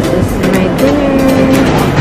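Background music with a steady beat and a held melodic line over it.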